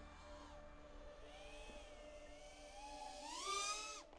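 FPV quadcopter's motors and propellers whining faintly, the pitch swinging up and down with the throttle, then climbing to a louder, higher whine near the end.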